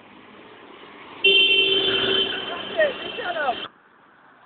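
A vehicle horn sounds one long, steady blast of about two and a half seconds, starting a little over a second in and cutting off sharply.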